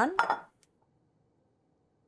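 A ceramic plate set down on a wooden counter: one faint, short clink about half a second in, just after a spoken word, then near silence.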